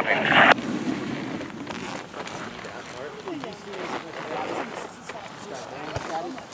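A loud spoken call ends about half a second in, followed by faint, scattered voices talking in the background over steady outdoor noise.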